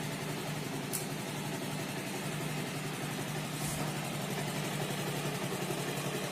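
Bajaj Pulsar's single-cylinder DTS-i engine idling steadily just after a timing chain replacement, running smoothly with no chain rattle.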